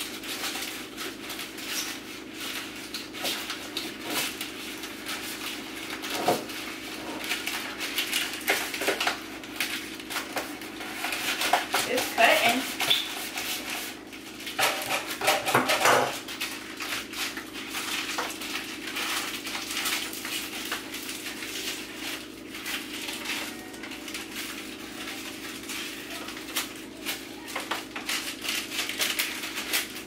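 Parchment paper being handled and trimmed to fit an organizer: a steady run of paper crinkling and rustling with small clicks and knocks, louder for a few seconds around the middle, with a brief voice sound now and then.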